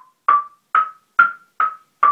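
Homemade wooden marimba's top bars struck one at a time with mallets, about two notes a second, stepping up in pitch and then back down. Each note dies away quickly after the strike.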